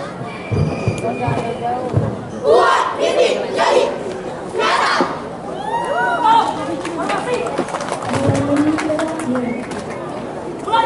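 Marching drill team's boots stamping on the court a few times in unison, followed by loud shouted voices calling out.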